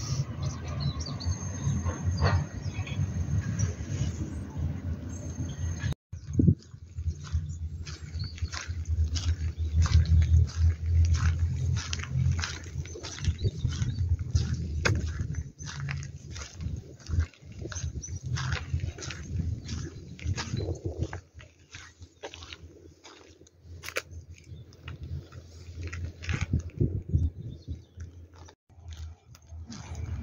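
Wind rumbling on a handheld microphone, with footsteps crunching on a gravel path. The sound drops out briefly about six seconds in.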